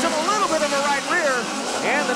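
Race announcer's voice calling the action, with midget race car engines running underneath.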